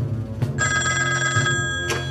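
An old-style desk telephone's bell ringing once, for about a second, followed near the end by a clack as the receiver is lifted off its cradle.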